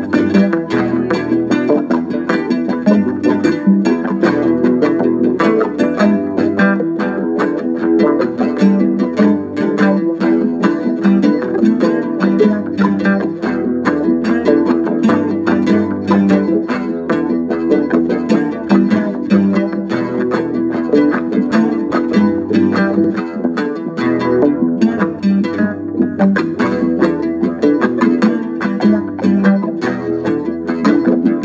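Cutaway acoustic guitar picked in a steady, dense stream of notes: a psych-rock jam.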